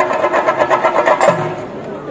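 Chenda drums beaten with sticks in a fast, dense roll that eases off about a second and a half in.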